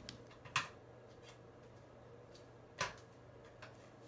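Bare foot tapping the glass top of a digital bathroom scale to switch it on: two sharp taps, about half a second in and near three seconds, with a few fainter ones between, over a faint steady hum.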